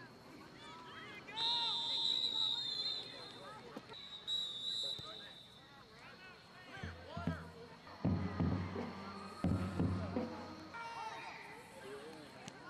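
Referee's whistle blown to end the play after a tackle: a long blast about a second and a half in and a shorter one around four seconds. Then loud men's voices calling out, and a murmur of voices throughout.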